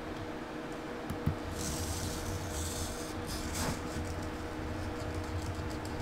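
Hobby servo motors of a six-axis robotic arm running a programmed motion sequence after a push-button start. A steady hum runs throughout, there is a click about a second in, and the whirring of the servos grows from about a second and a half in.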